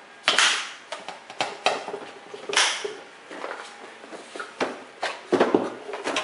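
A plastic parts-organizer case being shut and moved: a string of sharp plastic clicks and snaps with short rattly clatters, the busiest cluster near the end.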